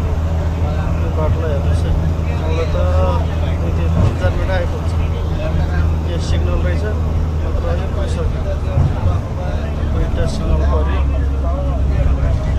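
Bus engine and road noise as a steady low drone inside the moving cabin, dipping briefly about nine seconds in. People's voices chatter over it.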